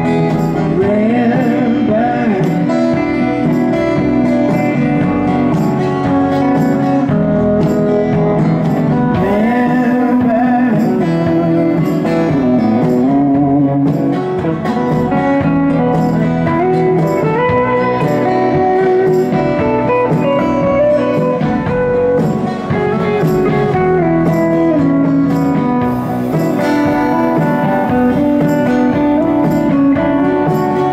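Live acoustic-electric band playing an instrumental break in a country-blues style. An electric guitar plays a lead with bending notes over acoustic guitar and upright bass.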